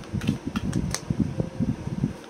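A deck of affirmation cards shuffled by hand: a run of quick, irregular clicks, over a steady background whir.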